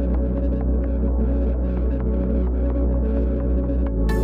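Electronic music in a stripped-down breakdown: a sustained deep bass drone and low held chords with soft pulses, the high end filtered away. The full mix comes back right at the end.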